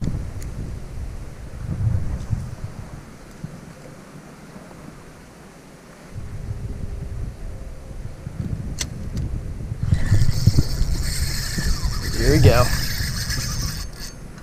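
Wind gusting on the microphone. About ten seconds in, a fishing reel starts paying out line with a high, hissing buzz as a fish takes the live mullet bait.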